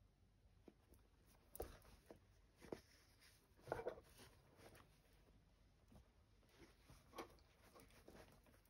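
Near silence with a handful of faint, brief rustles and soft scratches of wool fabric and thread being handled during hand embroidery, the clearest one just before the middle.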